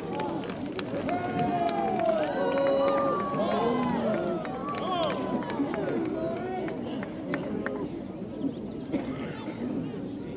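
Many voices talking and calling out at once, overlapping in a crowd babble that is loudest in the first half and thins out toward the end, with a few scattered claps near the start.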